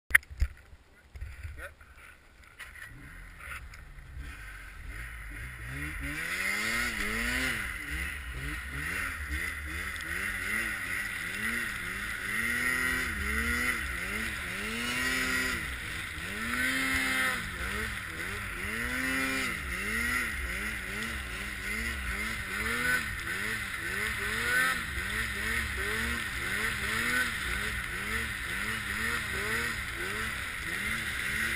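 Arctic Cat M8 snowmobile's two-stroke engine, revved up and eased off over and over as it ploughs through deep powder, its pitch rising and falling about once a second over a steady hiss. The engine is faint for the first few seconds, then builds up.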